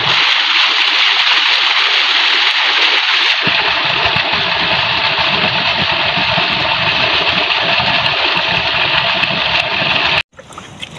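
Rainwater runoff rushing steadily over a muddy, stony path. About three and a half seconds in, a low rumble joins it.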